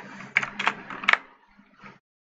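Computer keyboard keystrokes: a handful of key clicks in the first second or so, then quieter, as a newline escape is typed into a line of code.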